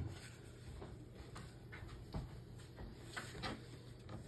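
Faint rustling and a few soft ticks of trading cards being slid past one another in the hand.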